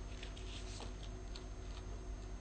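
Faint room tone: a steady electrical hum with a few soft, irregularly spaced ticks.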